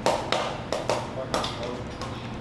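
Metal spatula tapping and scraping on a teppanyaki flat-top griddle: a string of sharp metallic clicks, about one every third of a second.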